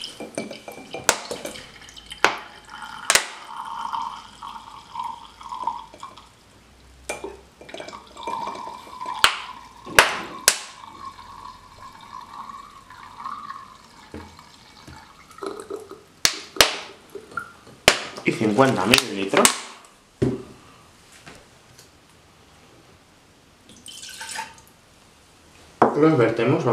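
Vinegar trickling and dripping from an upturned plastic bottle into a small glass beaker, with a faint wavering trickle tone and scattered sharp clicks.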